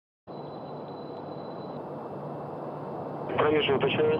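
A steady rushing background noise, rising slightly, with a faint thin high tone in its first half. A voice starts speaking shortly before the end.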